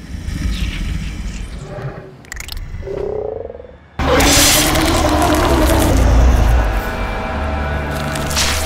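Film sound design for a monster: low croaking creature sounds, then about halfway through a sudden, loud creature cry over a deep rumble, mixed with score music.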